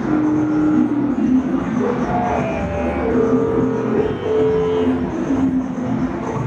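Live electronic music from synthesizers and a Korg Electribe 2 groovebox: a low drone with sustained synth tones, and a few long held notes in the middle.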